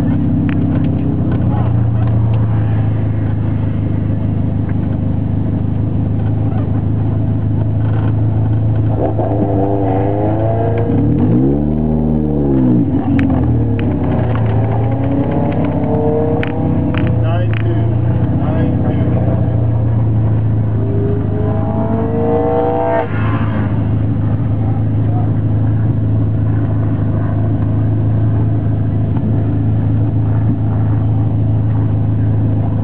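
Honda CRX Si's four-cylinder engine idling steadily, heard inside the cabin, with the revs swelling up and back down once about twelve seconds in. Another engine's rising note, a car accelerating away, comes through a few times in between.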